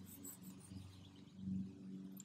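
Faint rasping of sidewalk chalk rubbed on its side across an asphalt driveway, growing a little louder about a second and a half in.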